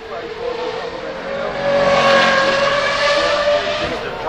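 De Tomaso P72 supercar accelerating past on a hillclimb. Its engine note climbs steadily in pitch, is loudest about two to three and a half seconds in, then eases off near the end.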